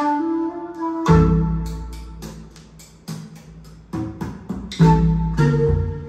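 Recorded music starting to play from a vinyl record through a pair of floor-standing loudspeakers in a room. A melody begins suddenly, and about a second in a deep bass and regular percussion come in.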